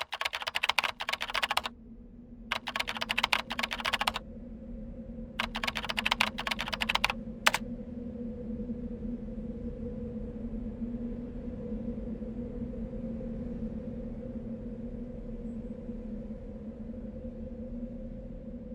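Computer keyboard typing in three quick runs of a second or two each, then a single key stroke about seven and a half seconds in, as text is typed out on screen. A low steady hum runs underneath and carries on alone after the typing stops.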